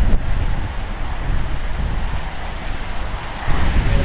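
Wind buffeting the microphone: a gusty low rumble that gets louder near the end.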